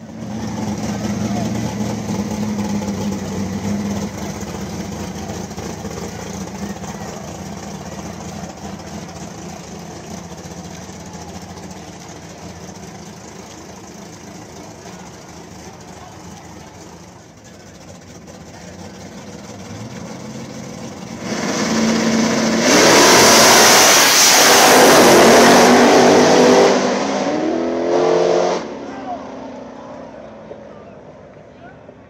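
Drag race car engine at full throttle, starting suddenly and then fading over about fifteen seconds as it runs away down the track. About twenty seconds in, a much louder, close engine sound with a rushing noise comes in for about seven seconds, then drops away suddenly.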